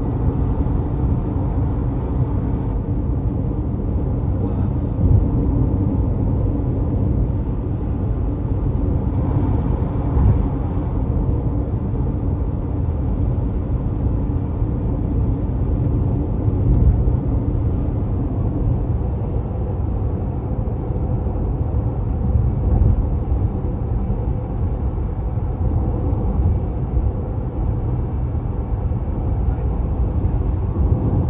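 Car cruising at highway speed, heard from inside the cabin: a steady low rumble of road and engine noise.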